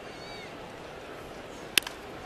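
Steady ballpark crowd noise with a few faint high calls, then near the end one sharp crack of a wooden bat hitting the pitched ball.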